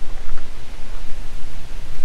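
Wind blowing across the microphone, heard as a continuous rushing noise with a low rumble.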